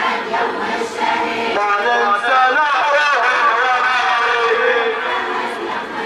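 Melodic chanting of a song, with long held notes that slide up and down, over a crowd.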